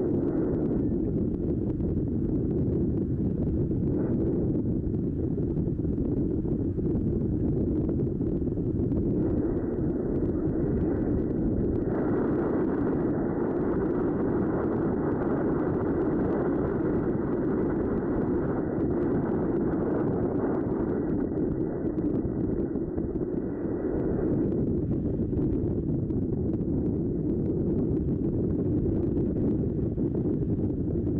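Wind on the microphone, a steady low rush that grows stronger about ten seconds in and eases again near the last quarter.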